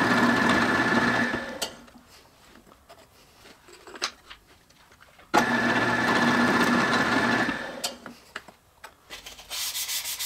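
Drill press drilling small through holes in walnut strips: the motor hums steadily for about two seconds, spins down, then runs again for about two seconds and spins down. Near the end, sandpaper begins rubbing over a wooden strip by hand.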